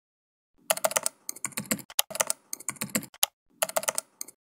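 Computer keyboard typing: quick runs of keystroke clicks with short pauses between them, starting about half a second in.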